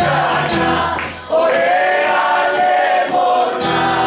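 Live male–female duet singing a traditional Greek folk song to acoustic guitar. About a second in the guitar falls away while a long sung note is held, and it comes back near the end.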